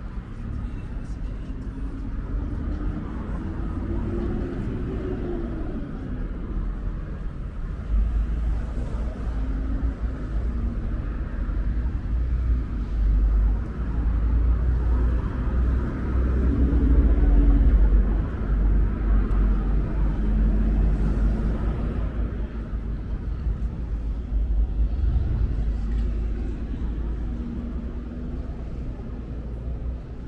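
City street traffic: road vehicles running past on a multi-lane road, the rumble swelling loudest around the middle, with an engine rising and then falling in pitch a few seconds in. Passers-by talk faintly under it.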